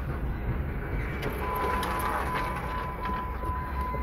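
Car cabin noise while driving in traffic: a steady low engine and road rumble. About a second and a half in, a faint steady high tone comes in and holds.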